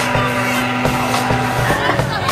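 Live rock band playing loud between sung lines: held amplified notes over drum kit hits.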